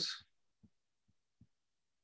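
A spoken word trailing off, then near silence broken by four faint, short, low taps: a stylus striking a tablet while handwriting on a digital whiteboard.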